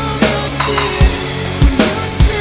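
Alesis electronic drum kit played in a rock beat over a backing track: kick drum about three times and sharp snare hits in between, with sustained notes of the song running underneath.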